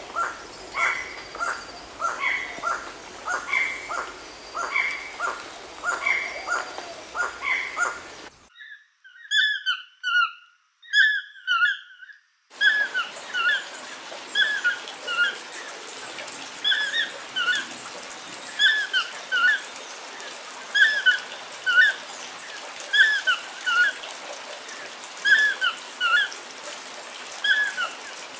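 Toucan calls in three spliced stretches: first a fast, regular series of about two calls a second, then a few clean isolated calls, then from about twelve seconds in a steady series of bending calls about one a second.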